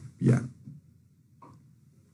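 A man's single short spoken syllable near the start, then near silence: room tone with one faint, brief sound midway.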